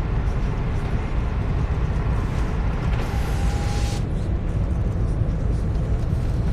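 Steady low rumble of car road and engine noise heard inside the cabin, with a brief rise of hiss about three seconds in.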